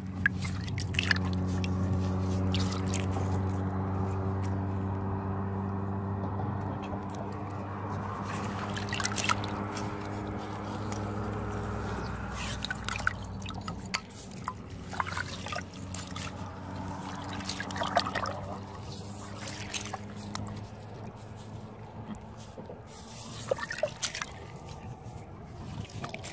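A hand working in wet mud and muddy water in a dug hole: squelching, sloshing and dripping, with several sharper splashes. A steady low hum runs underneath through the first half and fades away.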